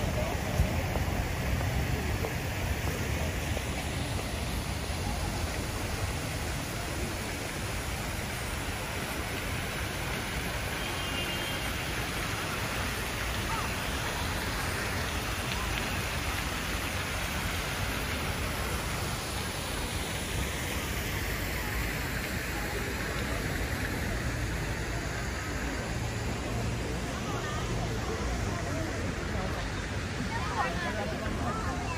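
Steady hiss of falling water across the open square, with a low rumble of wind on the microphone.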